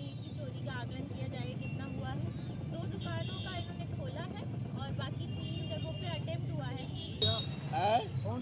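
A woman speaking to camera over a steady low rumble of street traffic, with a brief louder burst of voice near the end.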